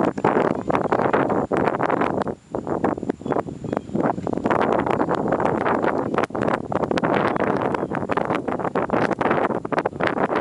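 Wind buffeting the microphone: a loud, gusty rush that swells and drops irregularly, with a brief lull about two and a half seconds in.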